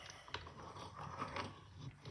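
Faint handling sounds of a metal padlock being fitted into a small bench vise: light clicks and rubbing, with one sharper click about a third of a second in.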